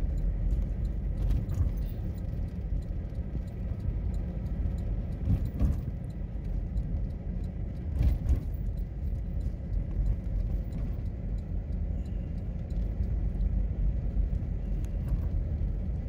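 Steady low rumble of a car driving slowly over a snow- and ice-packed road, heard from inside the car. A couple of thumps come about five and eight seconds in.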